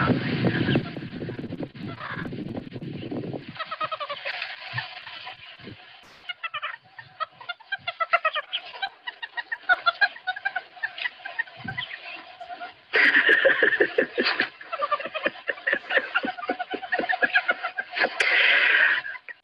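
Meerkat pups calling without pause, a dense run of short, quick, chirping calls: the begging and contact calls by which pups tell the group 'feed me' and 'I'm here'. The calls are heard through a camera recording played back over a video call. The clip opens with a few seconds of loud rushing noise, and the calling grows louder again about two-thirds of the way through.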